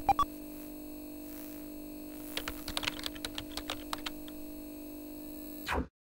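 Retro computer start-up sound effect: a steady low electrical hum with a couple of short beeps at the start, then about two seconds of rapid keyboard-typing clicks. The hum cuts off abruptly just before the end.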